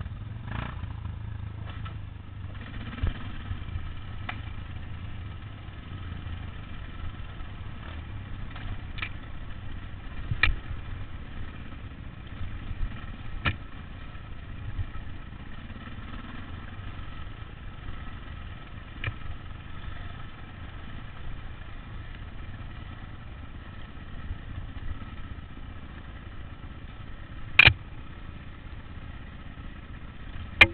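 Dirt bike engine running steadily while riding a bumpy trail, with scattered sharp knocks over the top; the loudest knock comes near the end.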